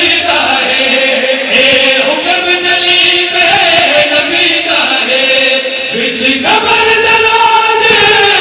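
Several men singing a qasida, a devotional Urdu poem, together through a microphone in long held notes. The melody jumps up in pitch about six and a half seconds in.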